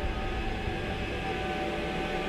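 Eerie horror-film score: a drone of several held tones with no beat.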